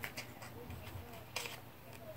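Faint crackles and small clicks of a transdermal estrogen patch and its plastic liner being handled in the fingers, with one sharper crackle about a second and a half in.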